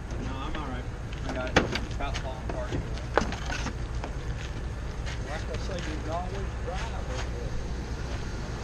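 Steady hum of an idling vehicle engine under distant men's voices, with two sharp wooden knocks about one and a half and three seconds in as a wooden cabinet is wrestled out of a pickup bed.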